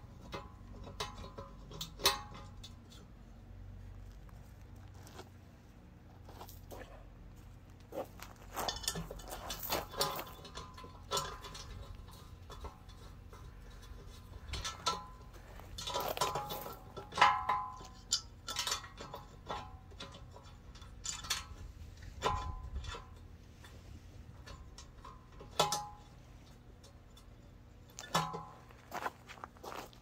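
Heavy steel parts of a home-built English wheel knocking and clinking together as they are handled and fitted by hand: scattered metal clinks and knocks, some ringing briefly, busiest in the middle.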